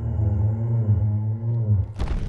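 Sound effect of the Google AR 3D Brachiosaurus: one long, low dinosaur call with a slight rise and fall in pitch, stopping near the end.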